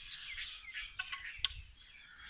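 Small birds chirping: a busy mix of short, high calls overlapping one another, with a sharper, louder note about one and a half seconds in.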